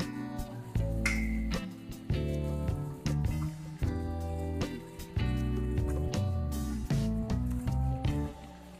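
Background music: held pitched notes over a deep bass, changing every second or so.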